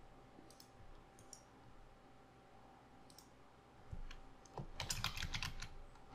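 Typing on a computer keyboard: a few faint, scattered keystrokes, then a quick, louder run of keystrokes from about four seconds in.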